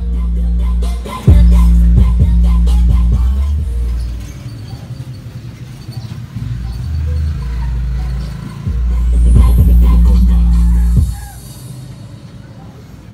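Music with deep bass notes playing through a home-built 3-way speaker box set (subwoofer, mid and tweeter on a 600-watt dividing network) driven by a karaoke amplifier. The volume drops about four seconds in, comes back up near eight seconds and drops again about eleven seconds in as the music volume knob is turned.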